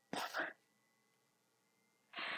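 Brief rustle of tarot cards sliding over a cloth-covered table, two quick strokes in the first half second, then near silence.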